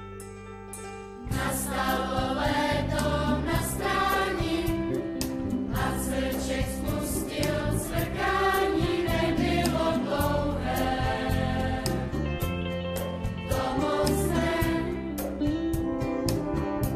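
Children's choir singing with instrumental accompaniment. It comes in loud and full about a second in, after soft held instrumental notes.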